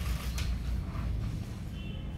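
Sheets of paper being handled and turned at a table: a short crinkle about half a second in, then faint rustling, over a steady low room rumble.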